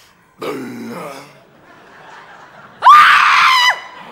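A cough, then about three seconds in a loud held shout of under a second, rising sharply at the start, holding one pitch and dropping away at the end.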